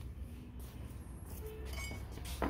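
Low steady hum with faint light clinks of small metal hardware and parts being handled, mostly in the second half.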